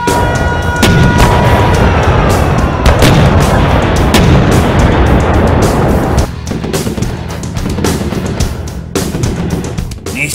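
Cartoon battle sound effects over background music: a loud, dense explosion rumble with booming hits from about one second in to about six seconds in, then dropping to quicker sharp cracks like gunfire.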